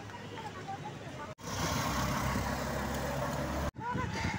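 Steady low engine rumble and road noise of a moving road vehicle, louder for about two seconds between two abrupt edits, after a quieter stretch of street ambience with faint voices.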